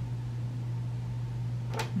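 Steady low hum running under the room sound, with one brief sharp noise near the end.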